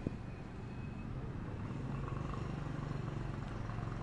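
Road traffic: a motor vehicle engine running steadily, a little louder in the second half.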